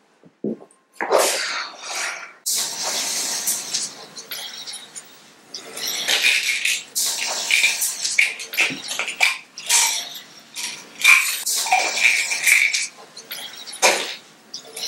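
Small bottles and jars in a bathroom medicine cabinet being moved and handled: an irregular run of short clinks, knocks and rattles, some ringing briefly, busiest in the second half.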